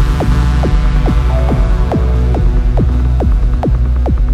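Techno track: a deep, steady throbbing bass drone under a quick run of short, downward-sweeping synth notes, about four to five a second.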